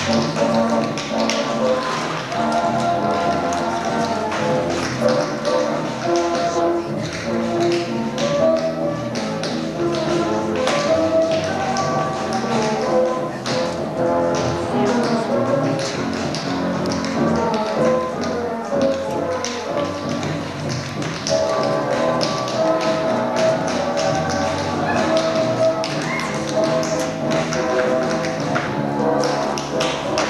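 Music for a stage dance routine, with many quick taps and some thuds from the dancers' feet on the stage over it.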